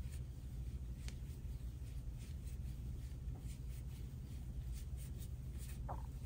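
Faint rustling of yarn and soft small clicks from a metal crochet hook as puff stitches are worked, over a steady low hum.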